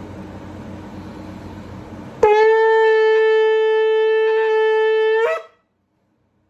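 An 18-inch Yericho shofar with a full natural horn finish, blown in one long blast that starts sharply about two seconds in. It holds a steady pitch for about three seconds, lifts slightly in pitch just before it cuts off.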